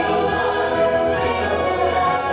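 Parade soundtrack music: choir voices singing over orchestral backing, at a steady level.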